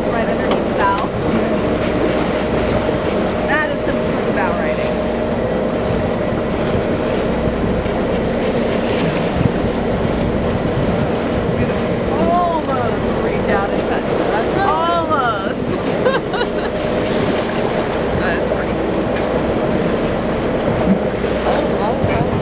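Boat engine running steadily with wind and choppy water against the hull. A few short calls that rise and fall in pitch come about halfway through.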